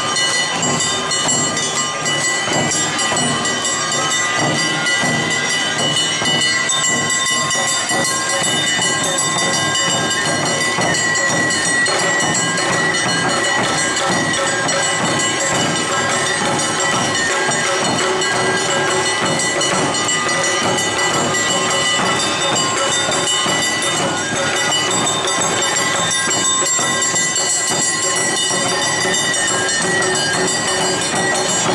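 Awa odori festival band playing: large hand-held taiko drums beaten with sticks in a brisk, unbroken rhythm, with high held notes sounding over the drumming throughout.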